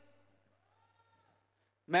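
A pause in a man's amplified speech in a large hall: his last words die away in the hall's reverberation, then near silence with only a faint low hum and a faint, brief rising-and-falling tone in the middle, before his voice comes back in at the very end.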